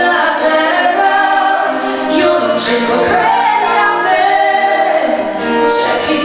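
A man and a woman singing an Italian song together in a live performance, holding long notes, accompanied by acoustic guitar, keyboard and violin.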